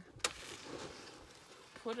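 A metal plastering trowel knocks once sharply against a wooden plaster board. A faint, soft scraping follows as straw-filled clay plaster is worked between board and trowel.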